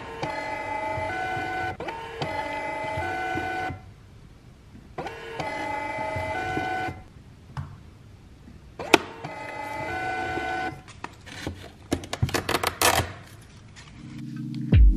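Desktop label printer feeding and printing a strip of labels: three runs of a motor whine that steps between pitches, each lasting a couple of seconds, with short pauses between. A sharp click comes in the second pause, and a flurry of clicks and rattles follows near the end as the printed labels are handled.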